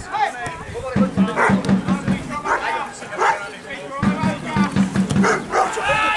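Voices at the side of a football pitch, with runs of short, quick, repeated calls about a second in and again at about four seconds.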